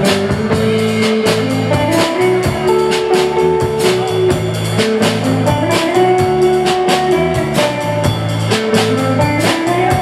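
A live rock band playing: electric guitar, bass guitar and drum kit, with held guitar notes over a steady drum beat.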